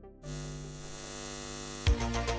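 A steady electric buzzing hum, even in pitch, that starts about a quarter second in and cuts off just before the end as a music beat comes in.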